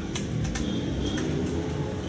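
Low, steady background hum with no speech.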